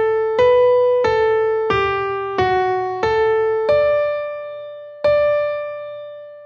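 Piano playing a slow single-line dictation melody, one note at a time with each note fading after it is struck. Six evenly paced notes are followed by two longer held notes near the end.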